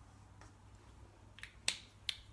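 A few faint clicks and taps from a dry-wipe marker and the whiteboard, with one sharper click near the end.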